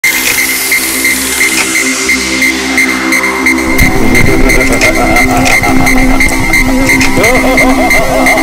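Electronic music intro: held synth tones with a short high tick about two and a half times a second and a falling sweep at the start. A deep, wobbling bass comes in about four seconds in.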